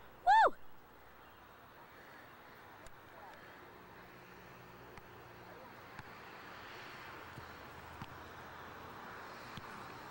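A brief, loud, high-pitched shout from a child, rising and falling in pitch, about half a second in; after it, only a faint steady outdoor background hiss with a few soft knocks.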